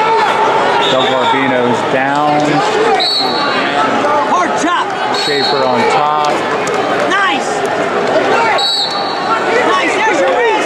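Crowd of many voices shouting and calling out at once in a large arena. Several short, high whistle blasts sound over it, at about one, three, five and nine seconds in.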